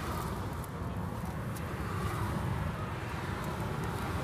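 Steady low rumble of road vehicles, even throughout with no distinct events.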